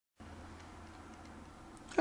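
Faint steady hiss and low hum of room tone, with a few faint ticks.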